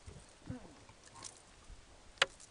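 A man's brief murmur, "mm", with a soft thump about half a second in, then a fainter murmur; otherwise quiet, with a few faint ticks.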